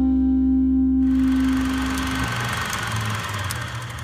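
A rock band's final held chord rings out, and a bright wash of noise joins it about a second in. The chord stops about two seconds in, leaving a low rumbling noise that fades away.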